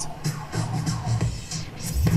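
A house track playing from a Pioneer CDJ, with its steady kick beat and high cymbal strokes. It is broken by a scratch as the jog wheel drags the track back to replay the cymbal that marks a new phrase.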